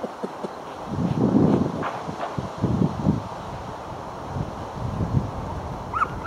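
Wind buffeting the microphone in irregular low gusts, strongest about a second in and again near three seconds, over steady open-air background noise.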